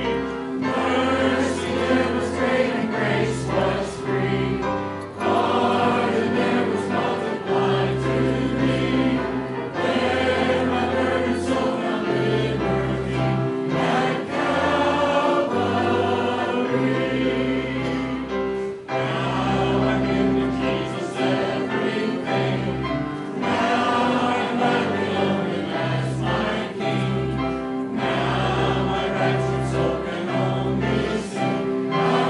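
Church congregation singing a hymn together with instrumental accompaniment, held chords over a steady bass line.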